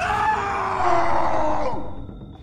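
A man's long, drawn-out cry, held for nearly two seconds and sliding slowly down in pitch before it fades out near the end.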